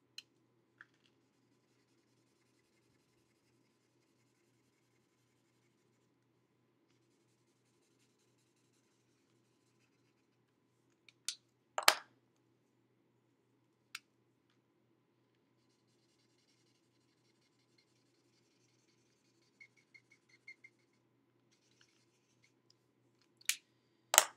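Felt-tip marker scribbling on vellum: faint scratchy strokes in two spells. A few sharp clicks, the loudest about halfway through.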